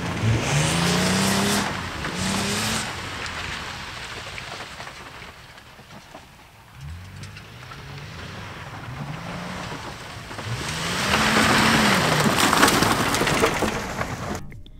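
Toyota 4Runner's 4.0-litre 1GR-FE V6 driving over a rough dirt trail, the engine revving up and down in repeated swells. It fades as the truck moves away, then grows louder again toward the end as it comes back near.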